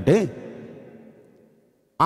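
A man's voice through a microphone: one word at the start, then a pause in which the sound fades away to near silence.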